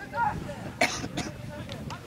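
Shouted calls on an outdoor football pitch, with a short cough close to the microphone a little under a second in.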